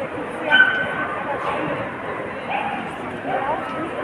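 Dogs yipping and barking over steady crowd chatter. The loudest is a short, sharp, high yip about half a second in, and a few smaller yelps follow later.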